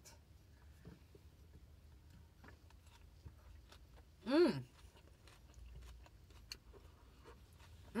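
A person chewing a mouthful of coleslaw, with faint crunching and small mouth clicks. A short hummed voice sound comes about halfway through and an "mmm" at the end.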